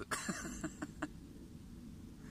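A man's short, breathy laugh: a burst followed by a few quick pulses, fading out about a second in.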